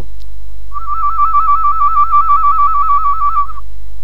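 Whistled warble by a person: one high held note that flips rapidly back and forth between two close pitches, about seven times a second. It starts about a second in and lasts about three seconds.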